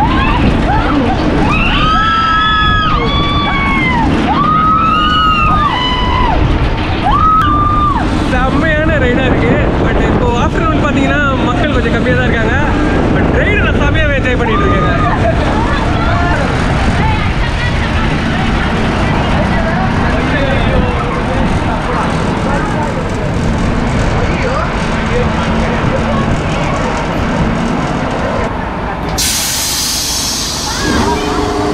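Riders screaming on a spinning, tilting bowl amusement ride, long rising-and-falling shrieks one after another over the steady rumble of the ride's machinery. The screams thin out about halfway through, leaving the rumble, and a sudden loud hiss comes near the end.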